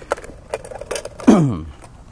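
Light clicks and knocks of a nesting camping cookset being handled: a pot and its lid with plastic bowls taken out from inside. About a second in comes one short sound that glides down in pitch, the loudest thing heard.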